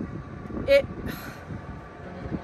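A woman says a single word and lets out a breathy sigh over a steady low background rumble.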